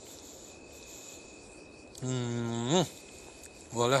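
A cow mooing twice: a low call about halfway through that rises sharply in pitch at its end, then a second call starting near the end.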